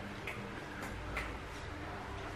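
Quiet room tone: a low steady hum with a few faint, irregular clicks.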